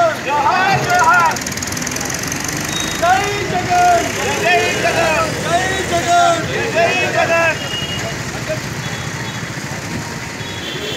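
Loud, high-pitched raised voices shouting in bursts over steady street traffic noise; the shouting stops about three quarters of the way through, leaving the traffic noise.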